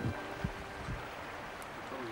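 Steady rush of a fast-flowing river, with a couple of soft low knocks about half a second and a second in.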